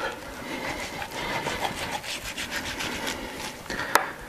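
Kitchen knife slicing through raw beef fat on a wooden cutting board in quick scraping strokes, with one sharp click near the end.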